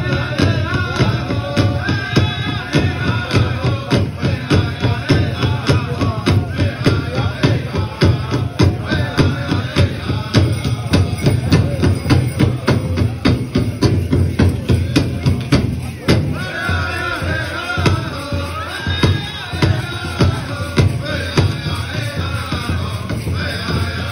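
Pow wow drum group singing a side step song, voices carried over a steady drumbeat on the big drum.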